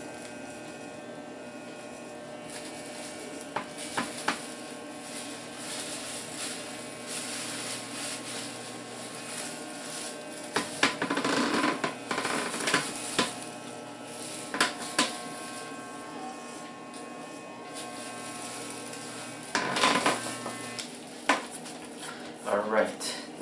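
Corded electric hair clipper running with a steady buzz as it cuts a toddler's short hair, broken by scattered clicks and short louder scratchy noises; it switches off about a second before the end.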